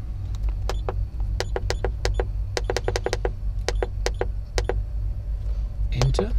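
About twenty short clicks in quick runs as the HARDI Controller 5500's arrow-up key is pressed again and again, stepping the register value up to 99. A steady low rumble runs underneath.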